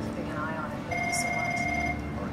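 A voice with wavering pitch, then a steady electronic-sounding tone held for about a second in the second half, like a phone ring tone or a synthesizer note in a soundtrack.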